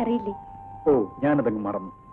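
Film dialogue: short spoken phrases in Malayalam, with a thin steady tone underneath that steps down slightly in pitch early on.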